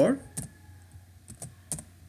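Typing on a computer keyboard: a handful of separate keystrokes, two of them in quick pairs.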